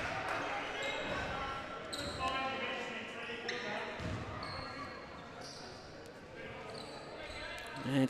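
Court sound of an indoor basketball game: a ball bouncing on the hardwood floor and faint, echoing voices of players and spectators in the hall.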